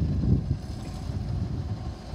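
Low, uneven rumble of an Autocar front-loader garbage truck running as it works a dumpster, with wind buffeting the microphone.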